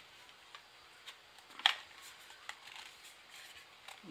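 Plastic slide cover of an Inateck FE2007 2.5-inch drive enclosure being pushed shut by hand: faint handling ticks and one sharp click about one and a half seconds in as the cover goes home.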